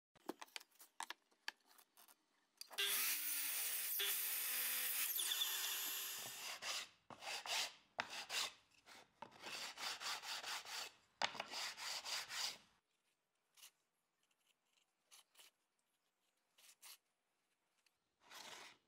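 Sandpaper rubbing along the freshly cut edges of a plywood jig in short back-and-forth strokes, about two a second. Before that comes a steady rasping noise lasting about four seconds, and a few light clicks at the start.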